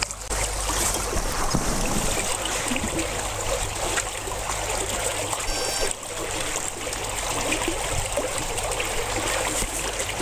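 Icy lake water sloshing and trickling in a hole in the ice, with broken ice pieces knocking and crackling as people float in the water.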